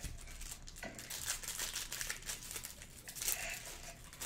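Foil trading-card pack wrapper being crinkled and torn open by hand: a continuous run of sharp crackles.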